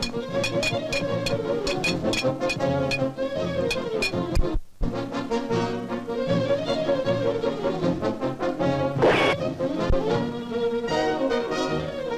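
Fast orchestral cartoon score led by brass, with quick even ticks at about four a second over its first few seconds. It cuts out for an instant a little before five seconds in, and a short noisy hit sounds through it about nine seconds in.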